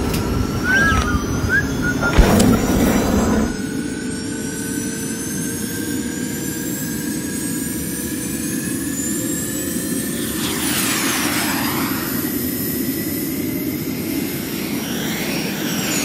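Jet-engine take-off sound effect: a steady rushing engine noise with high whines that slowly climb in pitch, swelling into a whoosh with falling sweeps about ten seconds in. A thump about two seconds in comes before the engine sound settles.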